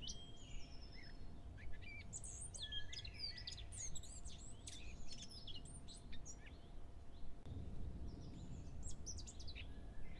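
Small birds chirping and singing, many short, quick calls at first and sparser toward the end, over a faint low rumble.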